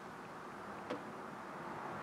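Faint steady background hiss with one light click about a second in: a fingertip tapping a scan tool's touchscreen.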